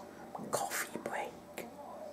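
Soft whispered speech from one person close to the microphone, in short breathy phrases with no clear words.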